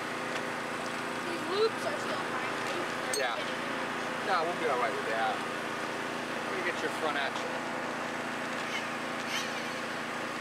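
A steady mechanical hum with a constant pitch, with indistinct voices rising over it now and then.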